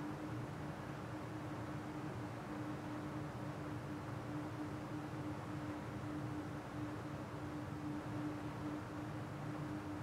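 Steady room tone: a constant low hum with one faint steady tone and even hiss, with no distinct events.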